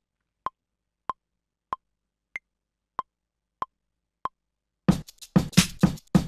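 Native Instruments Maschine metronome counting in before recording: seven short clicks about 0.6 s apart, the fourth higher-pitched to mark the start of a bar. Near the end the programmed drum pattern starts playing.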